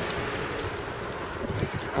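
Steady outdoor road-traffic noise from a town junction, an even rush with a faint low hum and no single event standing out.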